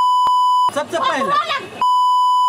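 Steady 1 kHz censor bleep tone, cut in abruptly, running for about the first 0.7 s and coming back about a second later, with a stretch of excited speech in between. The bleep masks the words of the quarrel.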